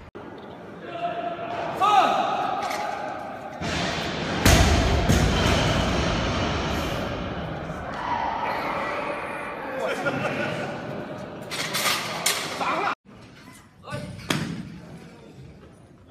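A loaded barbell comes down with a heavy thud about four and a half seconds in. Voices carry through a large hall, and a few sharper knocks follow near the end.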